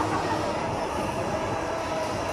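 Scarecrow spinning amusement ride in motion, its arms turning overhead: a steady, even mechanical running noise.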